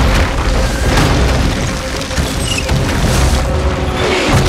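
Film sound effects of a volcanic eruption: a continuous deep rumble broken by several booming impacts as burning debris strikes the ground, under a dramatic film score.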